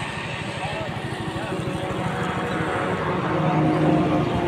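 Roadside traffic: vehicles running past on a road, with an engine hum growing louder in the second half as a vehicle approaches. Voices murmur in the background.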